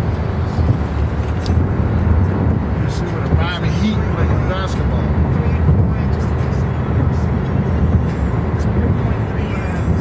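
Road noise inside a car cabin at highway speed: a steady low rumble of engine and tyres. A brief wavering high-pitched sound rises over it about three seconds in.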